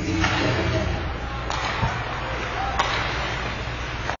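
Ice hockey game sound in a rink: skates and sticks on the ice under indistinct shouting voices, with a few sharp knocks of stick and puck.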